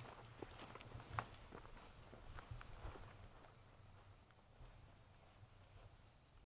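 Faint footsteps of several people walking, a run of soft steps that fades out after about three seconds into near silence.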